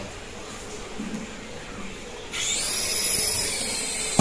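The small single electric motor of a cheap infrared hand-sensing toy helicopter spinning up suddenly about two seconds in: a high-pitched whine that rises and then holds as the helicopter lifts off by itself, set off by its infrared sensor sensing the hand below it.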